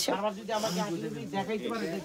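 People talking at a lower level than the nearby speaker: background chatter in a shop.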